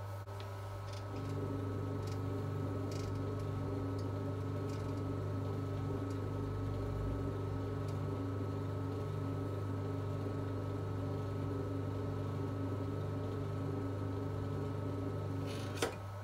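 Electric potter's wheel running with a steady motor hum, which grows louder about a second in as the wheel speeds up, while a trimming tool shaves leather-hard clay from the spinning mug. A single sharp click comes just before the end.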